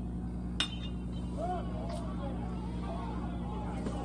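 A single sharp, ringing metallic ping of a metal baseball bat hitting a pitched ball, about half a second in, followed by voices calling out over a steady low hum.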